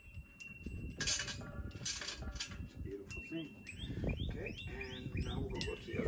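Sharp metal clicks and clinks of a bolt, washer and nylon nut being fitted by hand to a steel bracket on a concrete mixer frame. Small birds chirp several times in the second half.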